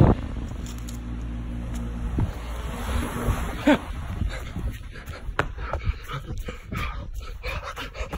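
Footsteps and phone-handling rustle while walking over gravel and grass, with a steady low hum in the first few seconds. A dog whines briefly a little over halfway through.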